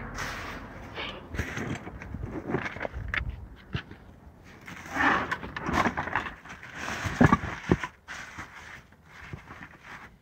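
Rummaging through a pile of discarded items: plastic bags and wrappers rustling and crinkling, with light knocks and clatters as things are shifted. It comes in uneven bursts, busiest about five and seven seconds in.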